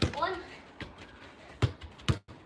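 A few dull thumps of a football being played against a wall and off a foot. The loudest comes about one and a half seconds in.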